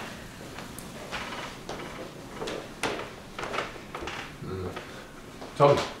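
Footsteps of a man walking around a room: a scattered, irregular series of soft taps and rustles.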